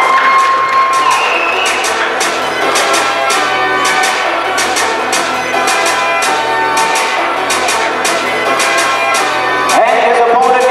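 Music with a steady beat, with a crowd cheering over it.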